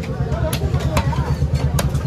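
A heavy knife chopping trevally into chunks on a wooden block: three sharp chops, the last near the end, over a steady low engine-like rumble.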